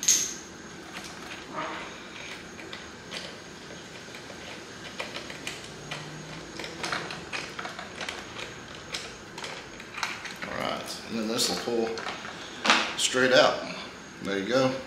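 Light scattered clicks and taps of a hex key and plastic motorcycle tail bodywork being handled while the rear turn-signal wiring is pulled out, opening with one sharp click. A voice speaks briefly near the end.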